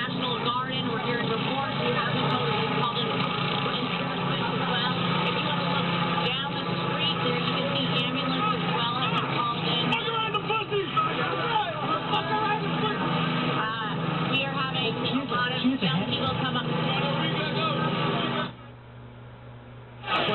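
A large rowdy crowd of young people shouting and yelling all at once in a dense, continuous din, heard through a TV news broadcast. The din drops away abruptly near the end.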